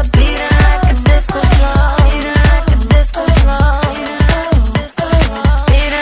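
Progressive house dance track: a four-on-the-floor kick drum about twice a second under bright synth lines. The beat drops out briefly just before five seconds in.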